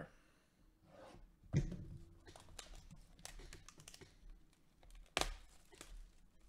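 Plastic shrink-wrap being torn and peeled off a sealed cardboard card box by gloved hands: irregular crinkles and small clicks, with a knock about one and a half seconds in and a sharp tap near the end.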